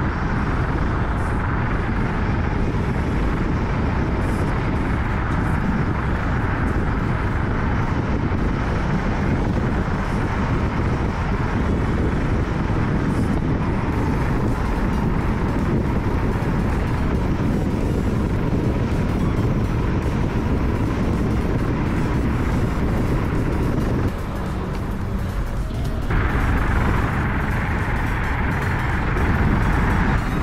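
Steady rush of wind and road noise from a camera mounted low on a moving vehicle, easing briefly about 24 seconds in before coming back louder.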